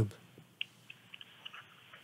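Faint hiss on a phone line with a handful of small, soft clicks scattered through a pause in the call.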